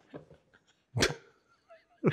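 A man's single short burst of laughter about a second in.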